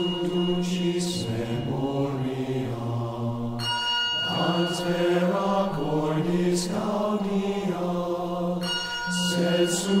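A slow chant sung by low male voices in long held notes that step from one pitch to the next. A ringing, bell-like tone comes in about three and a half seconds in and again near nine seconds.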